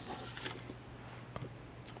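Quiet room tone with a faint steady low hum. Two faint small clicks, about one and a half and two seconds in, come from small plastic pieces being handled on a tabletop.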